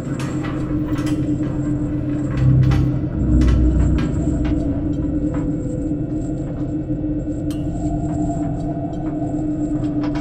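Dark ambient horror soundtrack: a steady low drone held on one pitch, with a deep rumble swelling about two and a half seconds in and scattered sharp clicks.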